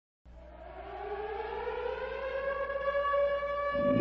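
Civil defense siren winding up, one pitched wail rising slowly in pitch and getting steadily louder. Music starts underneath just before the end.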